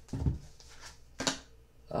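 Tarot card being handled and laid down on a cloth-covered table: two short, soft sounds about a second apart, with quiet room tone between them.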